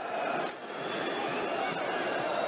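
A cigarette lighter struck once: a short, sharp click about half a second in, over a steady background hiss.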